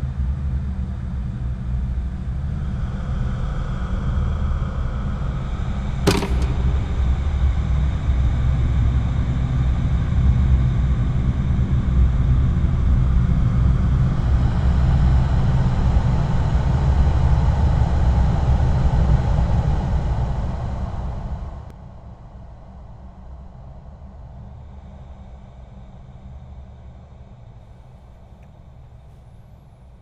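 Loud low rumble that builds for about twenty seconds and then cuts off suddenly, leaving a much quieter steady hum. A single sharp click sounds about six seconds in.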